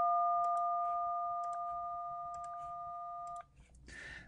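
DTMF telephone tone for the digit 1: two steady pitches sounding together, about 700 Hz and 1200 Hz, slowly fading and then cutting off about three and a half seconds in.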